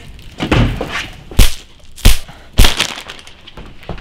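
A soft thump, then three loud bangs of something being struck hard, spaced about half a second to a second apart.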